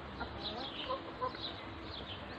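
Muscovy ducklings peeping over and over in short high calls that fall in pitch, with a few sharp clicks of bills pecking at the feed dish.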